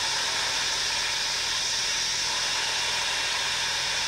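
Steady hiss of liquid oxygen venting from the Falcon 9's transporter erector lines on the launch pad, as the lines are cleared before launch.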